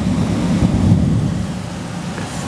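Thunder rolling in a low rumble over the steady hiss of rain, swelling to a peak about a second in and then dying down.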